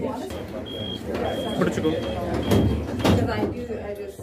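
Cable car cabin's electronic warning signal: a series of short, high, steady beeps repeating roughly twice a second, typical of the doors closing before departure, with a couple of sharp knocks near the end. Passengers chatter underneath.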